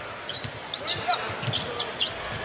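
Basketball being dribbled on the hardwood court, a run of irregular bounces over the arena's steady crowd noise.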